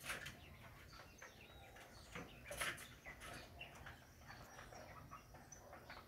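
Faint outdoor ambience with scattered short bird chirps and a few soft clicks.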